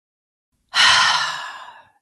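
A woman's deep breath out into the microphone, a sigh that starts loud after a moment of dead silence and fades away over about a second.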